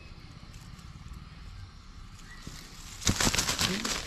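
A hooked fish flapping about in grass and leaves: a quiet rustle, then a loud burst of rustling and crackling about three seconds in.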